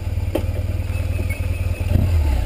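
A BMW motorcycle's engine idling steadily with a fast, even low pulse.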